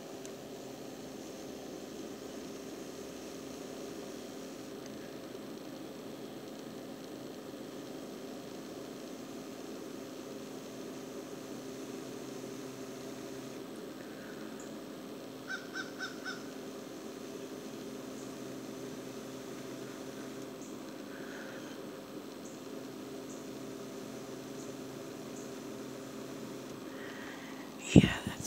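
Quiet outdoor ambience: a steady low hum with distant bird calls, including a quick run of four short calls a little past halfway.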